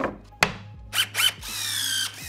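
A plywood panel knocks once against a wooden cabinet carcass about half a second in, with short scraping bursts after it. In the last half second a cordless drill runs, its whine dropping slowly in pitch.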